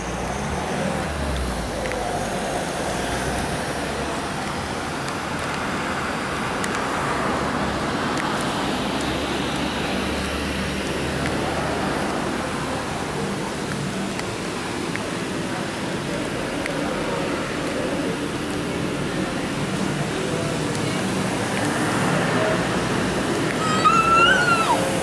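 Steady road-vehicle noise with a low rumble running throughout, with faint voices in the background.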